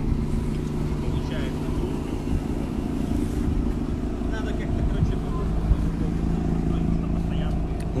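Mazda RX-8's supercharged rotary engine idling steadily while warm.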